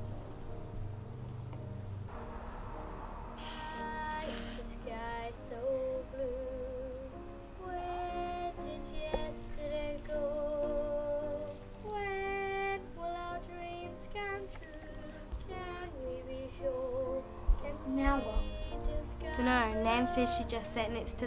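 Film soundtrack music: sustained keyboard chords under a high woman's voice singing long, wavering phrases with vibrato, starting about three seconds in.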